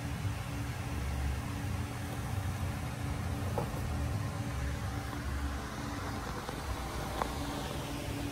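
Steady low mechanical hum of room tone, with a faint steady tone above it and a couple of faint clicks, about halfway through and near the end.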